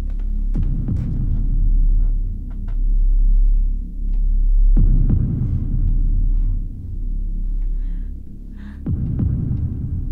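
Low, throbbing drone of a horror film score, with a deep descending boom about every four seconds, three in all.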